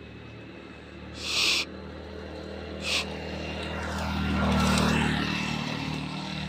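A steady, low engine hum that swells to its loudest about four to five seconds in and then eases off, like a motor vehicle passing. Two short hissing bursts come in the first three seconds.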